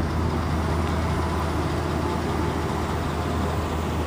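Steady low engine hum of a motor vehicle under a constant wash of outdoor roadway noise.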